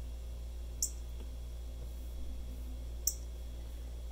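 Apple Pencil tip tapping the iPad Pro's glass screen: two short, high ticks about two seconds apart, over a steady low hum.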